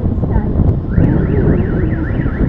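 Dense city street traffic rumbling; about a second in, an electronic alarm starts warbling, its pitch sweeping up and down roughly three times a second.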